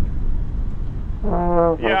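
A trombone plays one short, steady note about a second in, over a low outdoor rumble.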